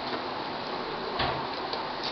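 Crisp puri shells handled on a plastic plate, with a soft knock a little after one second, over a steady background hiss.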